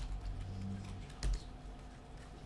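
Computer keyboard being typed on: a few scattered key clicks, with one sharper, louder keystroke a little past halfway.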